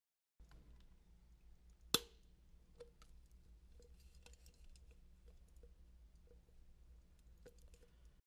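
Diagonal cutting pliers snipping and prying at the rolled double seam of an aluminium can, a run of small metal clicks and crunches with one sharp snap about two seconds in. This is a manual can-seam teardown, cutting the lid away to expose the body hook and cover hook. A low steady hum sits underneath.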